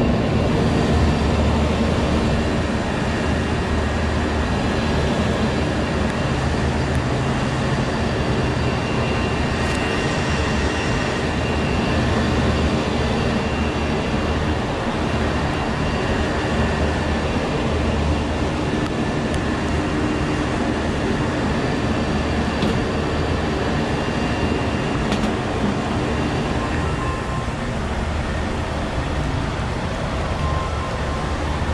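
Outdoor packaged air-conditioning unit running in cooling mode with its service panels open: a steady, loud mechanical hum and whir from the compressors and fan, with a few faint clicks.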